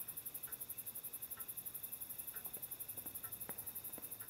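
Crickets trilling: a steady, high, rapid pulsing, with a short lower chirp repeating about once a second and a few faint knocks about three and a half seconds in.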